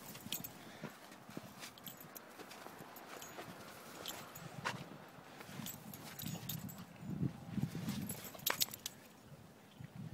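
Pit bulls playing in deep snow: irregular crunching of paws through the snow, with a cluster of low dog sounds about seven seconds in.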